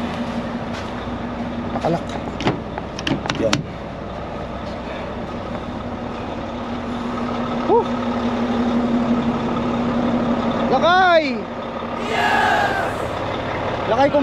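Idling diesel semi-truck engines make a steady hum. A few sharp clicks of footsteps on icy, snowy ground come two to three seconds in. Near the end the hum stops and a short hiss follows.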